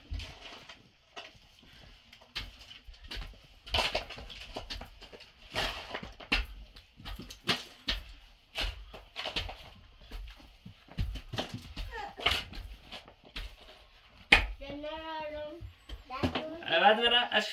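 Shovels scraping the dirt floor and clods of earth dropping into a wheelbarrow, in irregular strikes about once a second, the sharpest one near the end. Right after it a child's voice calls out briefly.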